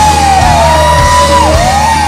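Live rock band playing, with long held notes sliding up and down above a steady drum beat and bass.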